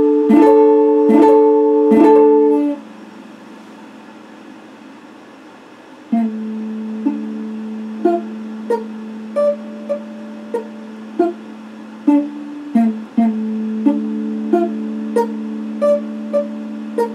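Electric guitar: a few loud chords struck in quick succession, cut off after about two and a half seconds. After a short pause comes a held low note with single higher notes picked over it at an even pace, about one and a half a second.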